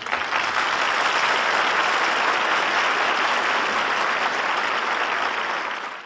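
Audience applause, a steady dense clapping that holds at one level and cuts off near the end.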